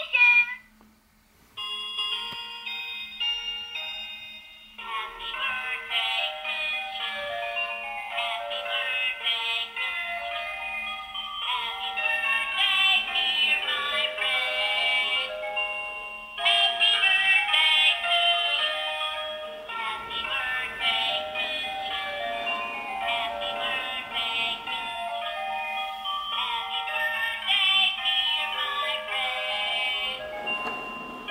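Pororo melody birthday-cake toy playing its electronic tune with a synthesized singing voice through a small, thin-sounding speaker. The tune starts about a second and a half in after a short gap and runs in repeating phrases.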